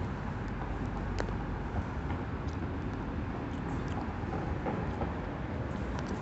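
Steady low outdoor background rumble, with a faint click about a second in and a few softer ticks.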